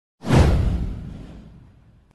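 Intro whoosh sound effect with a deep low rumble. It hits suddenly about a quarter second in, sweeps downward in pitch, and fades away over about a second and a half.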